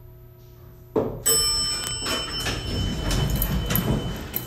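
Elevator car doors opening: after a low steady hum, a sharp clunk about a second in and a second loud jolt just after, then the doors sliding open with rattling and clatter.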